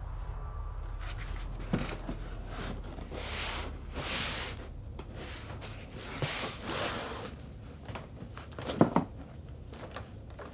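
A cardboard box being handled: cardboard scraping and rustling in several bursts, with a few sharp knocks, the loudest near the end.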